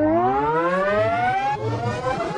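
A sustained, siren-like pitched tone glides steadily upward about an octave, then breaks off about one and a half seconds in. Music comes in at the end.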